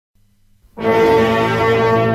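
Opening of an experimental electronic music track: a faint low hum, then a loud, held brass-like chord that comes in just under a second in and holds steady.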